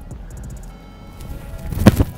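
A football kicked off the turf: one sharp, loud thud of the foot striking the ball near the end, over faint background music.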